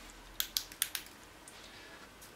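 Four short, sharp plastic clicks within about a second, from a small LED camping lantern being handled and switched in the hand, then only faint room noise.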